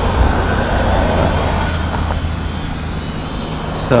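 Small toy quadcopter flying at a distance: a faint, steady motor whine over a low outdoor rumble, the whine fading after the first couple of seconds.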